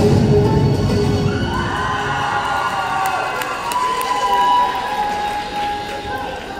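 Loud performance music that ends about two seconds in, followed by a crowd cheering and shouting.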